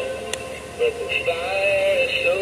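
Singing snowman pathway stake light playing its built-in song through its small speaker when the try-me button is pressed: an electronic voice singing a melody.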